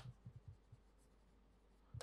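Faint pen strokes writing on a board, very quiet and mostly in the first half second.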